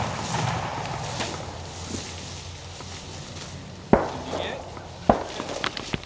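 Two distant shotgun shots, the first about four seconds in and the louder, the second about a second later.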